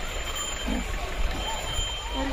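Outdoor ambience: a steady low noise with faint voices in the distance.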